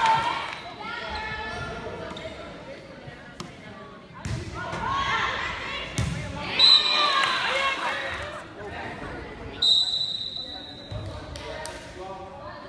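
Volleyball being played in an echoing school gym: the ball is struck several times, sharpest about six seconds in, while players and spectators call out and cheer. Two short, high referee's whistle blasts sound in the second half.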